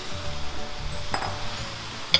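Shredded cabbage tipped into a pan of hot stir-fried vegetables and tossed with plastic spatulas: soft sizzling and stirring, with a single clink about a second in.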